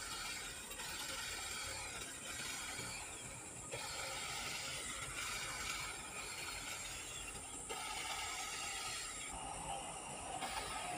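Electric hedge trimmer cutting shrubs, its blades buzzing with a rattling chatter in spurts of about a second or so, stopping and starting repeatedly.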